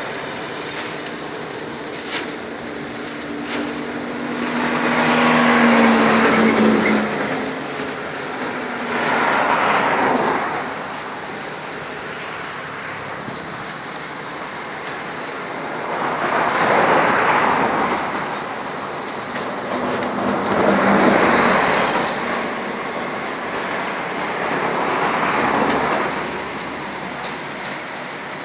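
Road traffic going past: about five vehicles in turn, each swelling up and fading away over two or three seconds, two of them carrying a low engine hum.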